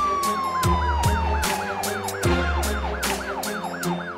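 A title-card sting: electronic music with a siren-like effect, one long tone sliding slowly down over the first two seconds while a fast warbling siren sweeps up and down about four or five times a second, over deep beat hits and sharp clicks.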